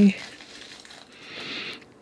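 Small clear plastic bag crinkling softly as fingers open it, a little louder in the second half, with a small click near the end.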